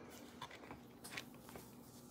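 Near silence: room tone with a couple of faint taps from the phone being handled, about half a second and a second in.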